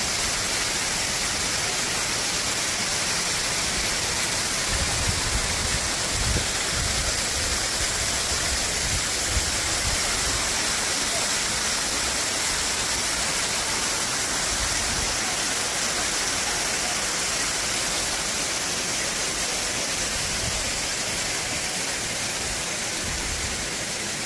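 Waterfall cascading down a steep rock face, heard close up: a steady rush of falling and splashing water.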